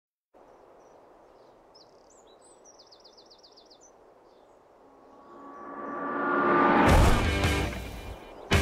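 Faint outdoor ambience with a bird giving a quick series of about ten short chirps. From about five seconds a rising swell builds into a loud roar near the end.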